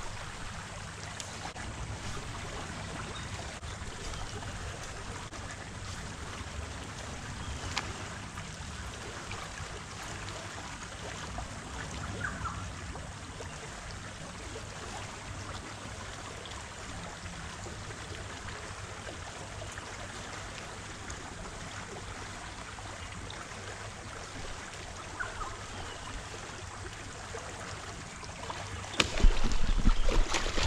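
Steady low hiss of creek water and wind on the microphone. About a second before the end comes a loud, sudden splash: a barramundi striking the bait at the surface.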